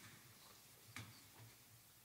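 Near silence: room tone with a faint low hum, broken by a single soft knock about a second in.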